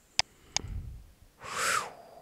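Two sharp computer-mouse clicks a third of a second apart, then a short breathy exhale near the end.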